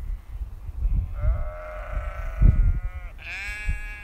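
Sheep bleating: one long, drawn-out bleat starting about a second in, then a second bleat near the end.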